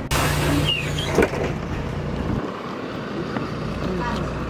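A motor vehicle running close by: a steady engine hum with road noise, whose deepest rumble falls away about two and a half seconds in. There is a sharp click about a second in.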